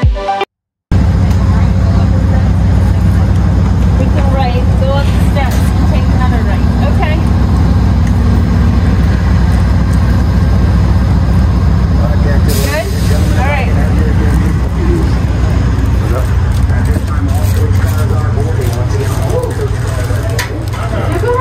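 Passenger train standing at the platform with its engines idling: a loud, steady low rumble that starts after a short gap just under a second in, with faint voices underneath.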